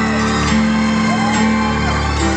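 Live piano playing slow, sustained chords, the opening of a piano ballad, with fans whooping and screaming over it in an arena.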